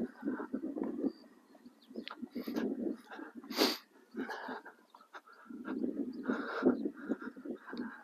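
Footsteps of a man and the hooves of a young Connemara horse crunching on a gravelly sand arena surface as he leads it, in irregular scuffs, with a sharper burst about three and a half seconds in.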